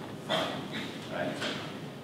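Speech only: a man lecturing, with short pauses and a brief spoken "Right?".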